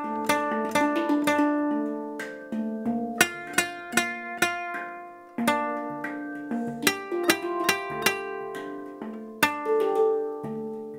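Handpan and nylon-string classical guitar playing a slow, gentle duet, the notes struck and plucked one after another and left to ring. The sound fades about five seconds in before the next phrase begins.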